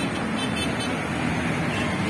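Steady road traffic noise: engines of cars and motorcycles running along a highway.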